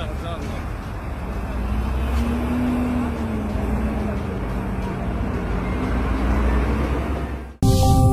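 Street ambience with a van driving past close by over a steady rumble of traffic, with voices in the background. About seven and a half seconds in it cuts off abruptly and electronic music begins.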